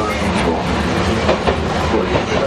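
Tokyo Toden 7000 series tram running, with the steady rumble and gear noise of its nose-suspended (tsurikake) traction motors and a few clicks from the wheels on the track.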